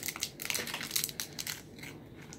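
Crinkly plastic wrapper of a toy blind bag being pulled open by hand, a rapid run of crackles that dies down near the end.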